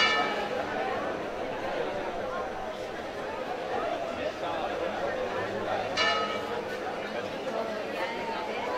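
A church bell struck twice, about six seconds apart, each stroke ringing out and fading over a second or so, over the chatter of a crowd.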